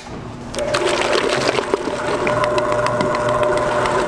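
Commercial stand mixer running with a steady whine after a sharp click at the start; the motor comes up about half a second in. Its wire whip is beating chocolate cream in a steel bowl.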